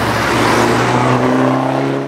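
2012 Fiat 500 Abarth's 1.4-litre turbocharged four-cylinder engine as the car drives by through a bend: a steady engine note with tyre and road noise that fades, the note rising slightly in pitch in the second half.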